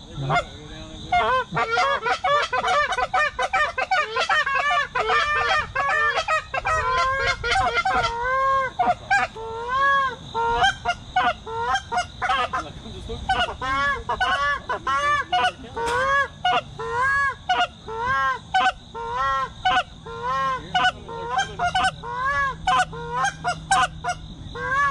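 Canada geese honking: many overlapping honks for the first several seconds, then a steady run of single honks about one a second.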